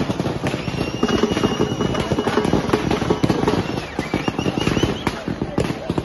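A string of firecrackers going off in a rapid, dense crackle of bangs, with a crowd shouting over it.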